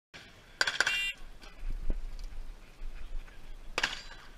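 A few sharp metallic clicks and clinks, one cluster about half a second in and another near the end, with faint handling noise between.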